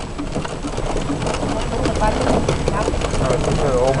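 Small electric car driving over rough dirt ground: a steady rumble of tyres and a loose rattling of the body, with wind on the microphone. A person's wavering voice comes in during the second half.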